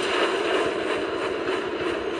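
Steam tank engine sound effects from an animated railway show: a train running along the rails, heard as a steady noise with no music over it.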